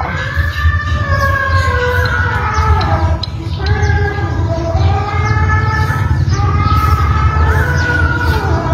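Music: a long, sustained sung melody that glides up and down in pitch, over a steady low bass.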